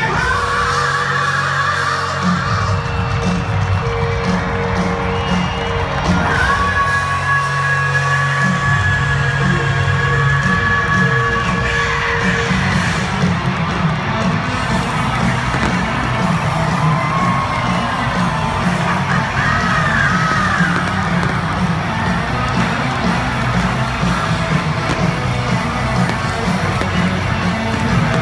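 A hard rock band playing loud and live through a stadium sound system, with a distorted electric lead guitar holding long notes and bending them. The crowd cheers and whoops over the music.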